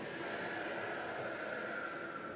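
A woman's long, controlled exhale out through the mouth, a soft steady breathy hiss that fades away near the end.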